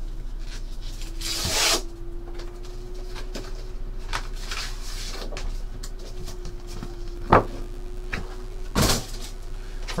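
Cardboard packaging being opened and handled by hand: a sliding, rustling scrape about a second in, a sharp tap past the middle and another short scrape near the end, over a steady low electrical hum.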